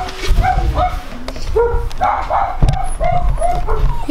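Dogs barking repeatedly in short barks, with a single thump a little past the middle.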